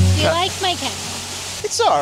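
Steady rush of water from a nearby woodland cascade, with brief snatches of voice partway through.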